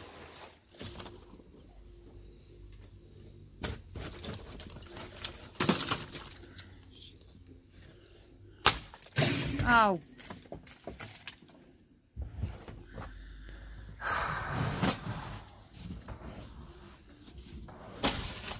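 A brush pushing heavy, icy snow off a plastic-sheeted shed roof: scraping, with a few sharp knocks.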